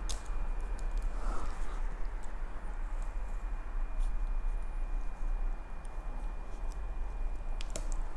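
Faint rustling and a few light clicks of a plastic zip tie being threaded through plastic garden mesh over sphagnum moss, over a steady low hum.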